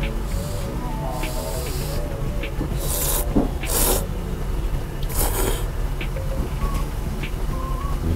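Thick ramen noodles being slurped in several loud, hissing slurps, the strongest a little past the middle, over quiet background music.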